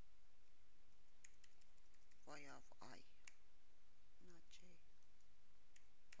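Computer keyboard keys being typed while editing code: a quick run of key clicks about a second in, then single clicks later.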